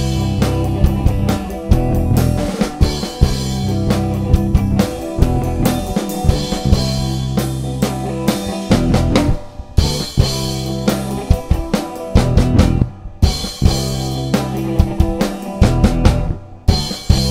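Live indie rock band playing an instrumental passage: drum kit keeping a steady beat with kick, snare and rimshots, under electric bass and electric guitar. The band stops briefly twice, about nine and a half and thirteen seconds in, then comes back in.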